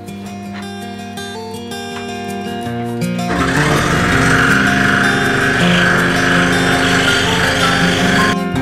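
Background music throughout. About three seconds in, an Excalibur scroll saw starts running beneath it with a steady buzz as it cuts the wood.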